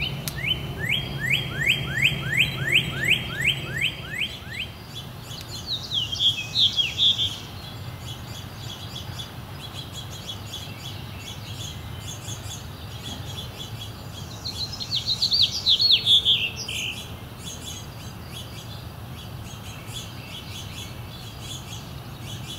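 Songbirds singing: a run of about a dozen quick downslurred whistles over the first four seconds, then two short warbled phrases, one about six seconds in and one about fifteen seconds in, over a steady low background hum.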